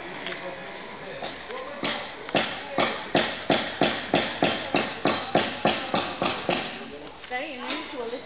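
Hard, regular footsteps on a paved stone street, about three steps a second, starting about two seconds in and stopping shortly before the end, with faint voices around them.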